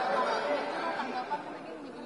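Indistinct chatter of several people talking at once, quieter and further off than a voice right at the microphone.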